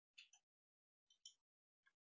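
Near silence between the narrator's sentences, with only a couple of barely audible faint ticks.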